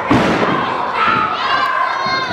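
A single heavy thud just after the start as a wrestler's body hits the wrestling ring's canvas mat. It is followed by loud shouts from spectators in the hall.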